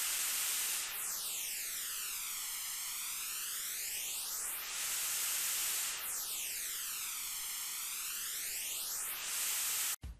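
White noise from a studio speaker, picked up by two microphones that are mixed together, with one microphone moved away from and back toward the speaker. The comb-filter notches sweep through the hiss as a hollow, flanging whoosh that dips down and back up twice.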